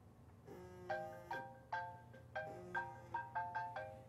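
A phone ringtone: a quiet melody of short marimba-like notes played in a few quick groups, ringing for an incoming call.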